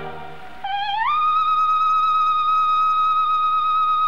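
Operatic soprano voice sliding up into a very high note about a second in and holding it steadily with only a slight vibrato, with little accompaniment under it.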